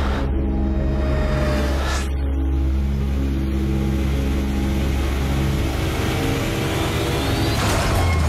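Trailer sound design and score: a deep, steady droning rumble under sustained low tones, with a whoosh about two seconds in and a rising whoosh near the end.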